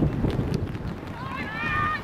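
A high-pitched shout from a voice on the pitch or sideline, starting about a second in and held briefly, over a steady low rumble of wind on the microphone.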